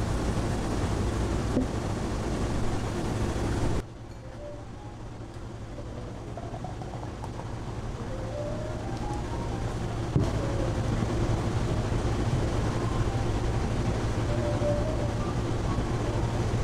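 A steady low rumble that cuts off suddenly about four seconds in. A quieter stretch follows as a thick milky shake is poured into a tall glass, with faint rising tones and the level slowly building back up. A single sharp click comes shortly after the middle.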